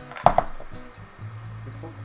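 A short, sharp clink of wooden pencils knocking together as they are sorted through, near the start, over soft background music.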